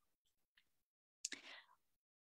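Near silence, with a faint, short breath drawn a little past the middle.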